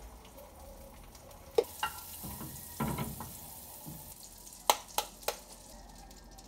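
Food sizzling in a frying pan, the sizzle starting with a sharp clack about a second and a half in. Several sharp taps and knocks of kitchen utensils come through it, with three quick ones near the end.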